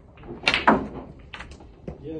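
A snooker shot: the cue tip strikes the cue ball, and a sharp click follows as the cue ball hits the blue, the loudest sound. Fainter knocks of the balls come about a second later and again near the end.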